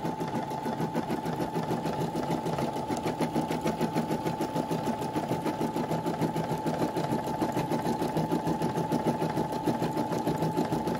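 Brother computerized embroidery machine stitching at a fast, even rhythm over a steady whine, needle sewing through holographic vinyl layers in the hoop during the final stitching of an embroidered bow.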